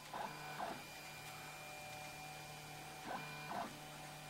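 MendelMax 3D printer running a print, its stepper motors giving a faint pitched whine as the print head moves. The whine swells briefly twice, once near the start and again about three seconds in, over a steady low hum.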